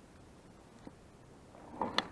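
Quiet background, then a brief rustle ending in a sharp click near the end: handling noise as the camera is moved.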